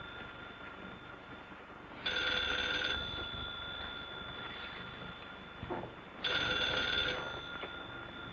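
A telephone bell ringing twice, each ring about a second long and some four seconds apart, its tone dying away slowly between rings.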